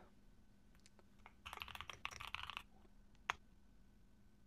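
Typing on a computer keyboard: a few faint keystrokes, then a quick run of them, then a single louder key press about three seconds in, as the question is entered and sent.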